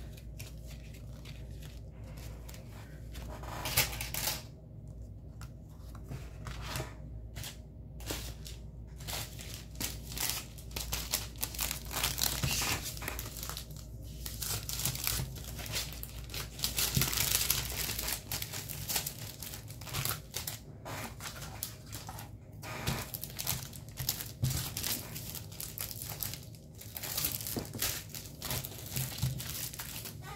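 Paper and clear plastic sleeves being handled and sorted, crinkling and rustling in irregular bursts, busiest around the middle.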